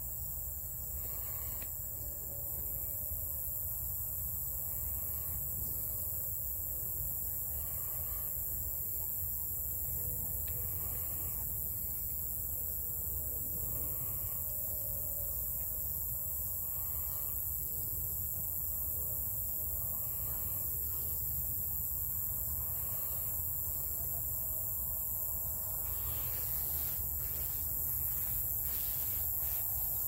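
Steady high-pitched chorus of crickets and other insects, over a low steady rumble.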